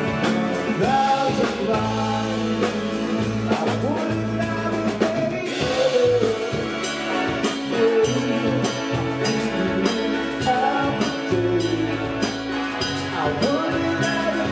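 A live rock band playing a passage without sung words. Electric guitar, bass and drums carry it, and a saxophone plays a wavering lead melody over the top.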